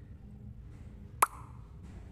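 A single short plop from a smartphone message notification about a second in: a sharp click with a brief ringing tail, signalling an incoming text message.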